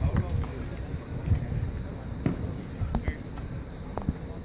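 Batting practice on a baseball field: a few sharp knocks of bats and balls, one at the start, two between two and three seconds in and one at the end, with men's voices in the background.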